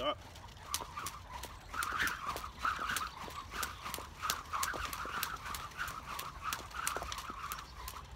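A skipping rope turned fast through side swings and crosses: it whirs through the air and taps the paving in a steady rhythm, about three taps a second.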